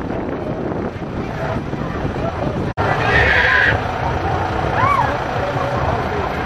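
Street parade crowd noise: chatter and voices over a low rumble, broken by a momentary dropout a little before halfway. Just after it comes a shrill, high-pitched call lasting under a second, and near the end a short rising-and-falling cry.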